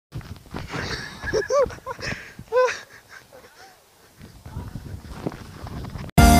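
A high-pitched voice giving a few short squealing cries that rise and fall in pitch, between about one and a half and three seconds in, over low rumbling and rustling on the microphone.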